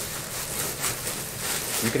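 Clear plastic bag crinkling and rustling as a replica football helmet wrapped in it is handled, an irregular crackly rustle.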